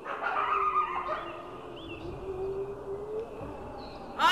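Small birds chirping briefly over a steady, slightly wavering low tone held through the whole stretch.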